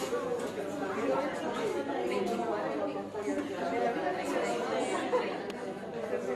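Many voices talking at once: a classroom of students chattering in small-group discussion, with no single voice standing out.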